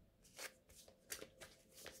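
A deck of tarot cards being shuffled by hand: a faint, irregular run of soft card-against-card strokes.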